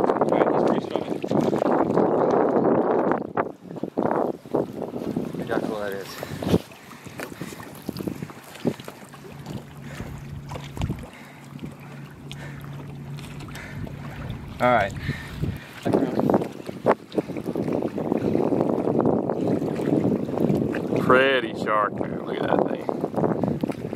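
Gusty wind on the microphone, loud at first, dropping off about four seconds in, and picking up again for the last few seconds. A low steady hum runs through the quieter middle for about seven seconds.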